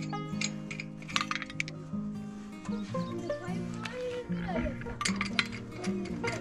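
Background music, with a few sharp metal clinks about a second in and again near the end as steel wheel lug nuts are spun off the studs by hand and handled.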